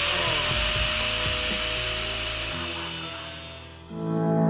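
Corded angle grinder running at full speed with a steady high hiss and a thin whine, cutting into the sheet-metal hood of a Jeep Cherokee. It fades away near the end, with background music underneath.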